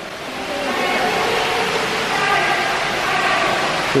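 Steady rushing of running water and pumps in an indoor penguin exhibit, with faint voices of other visitors underneath.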